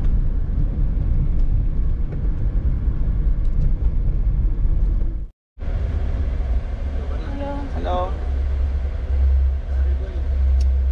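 Low engine and road rumble inside the cab of a 1995 Piaggio Porter minivan as it drives. The sound drops out for a moment about five seconds in, then the rumble goes on, with a short spoken "hello" near the end.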